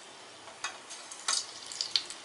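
Hot oil sizzling as small dollops of methi pakora batter fry in it, with a few short sharp clicks and pops.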